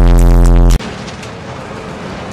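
A loud, held electronic bass note that cuts off abruptly a little under a second in. A much quieter, even noise with a few faint clicks follows.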